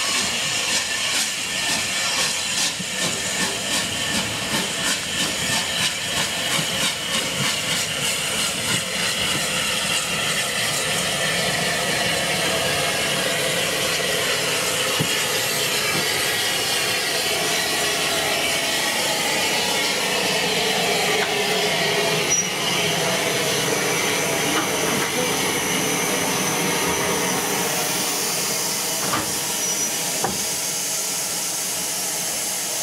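Unrebuilt Bulleid Battle of Britain class three-cylinder steam locomotive 34070 Manston working past, its exhaust beats coming in quick regular succession for the first ten seconds or so. Then comes a steadier hiss of steam with the rumble of the train on the rails.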